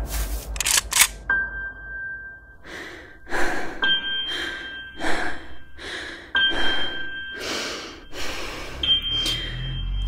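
Film-trailer sound design: two sharp clicks in the first second, then a high steady electronic tone that switches on and off several times over short rhythmic bursts of hiss.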